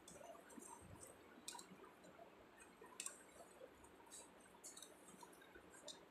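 Near silence: room tone with a few faint, short clicks from a plastic bottle and plate being handled, the loudest about three seconds in.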